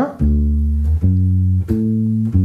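Fender Precision Bass playing a D major triad arpeggio: three plucked notes stepping up, D, F sharp and A, each ringing until the next.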